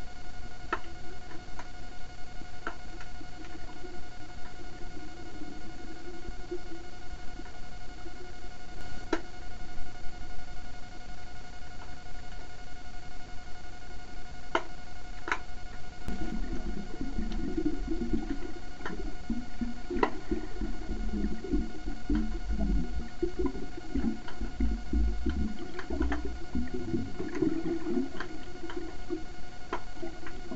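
Underwater sound picked up by a camera in a waterproof housing: a steady high electronic whine with scattered clicks. About halfway through, a low rumbling of water movement joins in.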